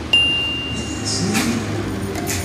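A single high, bell-like ding that rings on one pitch and fades over about a second and a half, with a short swish about a second in.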